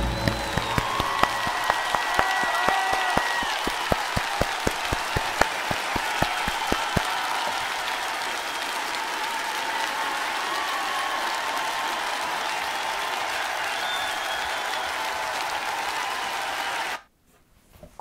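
A concert audience applauding at the end of a vocal performance, with a run of sharp, close hand claps over it for the first seven seconds or so. The applause cuts off abruptly about a second before the end.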